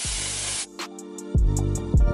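Mixed vegetables sizzling in butter in a cast iron skillet, cut off abruptly well under a second in. Background music with a heavy drum beat and bass takes over for the rest.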